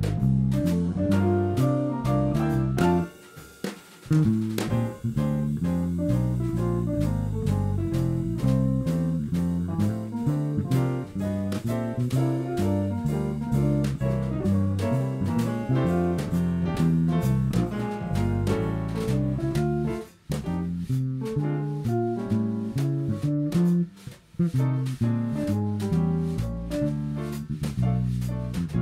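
Jazz quartet playing live: archtop guitar, bass guitar, upright piano and drum kit with steady cymbal time. The band drops out for a moment about three seconds in, with two shorter breaks later on.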